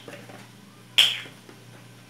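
A single sharp click about a second in, with a brief ringing tail, amid quiet kitchen handling.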